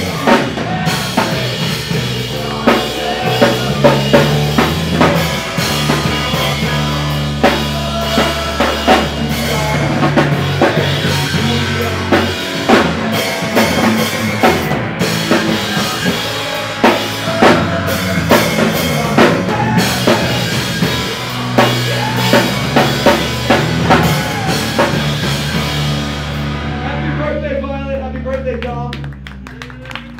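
A live hardcore punk band playing loud, with a pounding drum kit, bass and distorted guitars. Near the end the full band stops and a guitar is left ringing.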